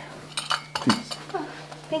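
Several light clinks and knocks of china: a cup rattling on its saucer as it is carried to a table.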